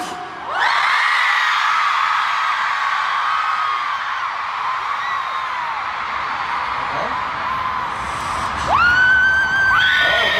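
Large concert crowd of fans screaming and cheering, many high-pitched screams overlapping. One long, steady scream close to the microphone stands out near the end.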